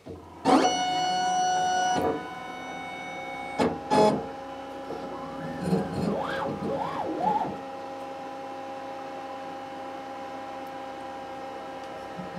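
CO2 laser cutter's machine hum: a high-pitched, many-toned whine starts suddenly about half a second in and is loud for about a second and a half, then settles into a steadier, quieter hum. A sharp click comes near four seconds in, and a few wavering pitch glides follow between about five and seven and a half seconds.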